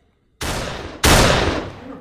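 Two loud blast-like sound-effect hits, the second louder, each starting suddenly and dying away over about half a second.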